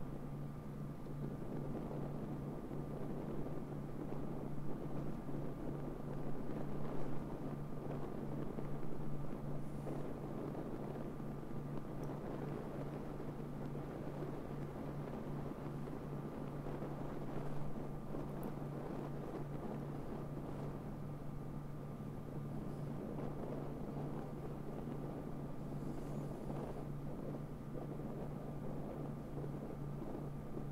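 Wind and road noise from a moving car, picked up by a camera mounted outside on the car's roof: a steady rushing over a constant low hum, swelling a little now and then.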